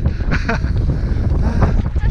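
Wind buffeting the camera microphone: a loud, steady low rumble, with brief faint voices.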